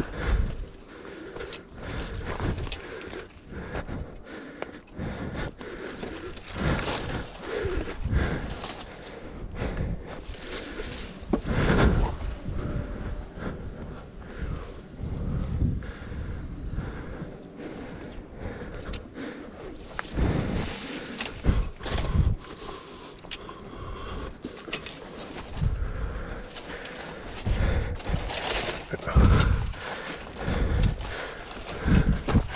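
A hiker's footsteps on a dirt and rock trail with rustling and handling noise, in uneven bursts with irregular thumps and low rumbles.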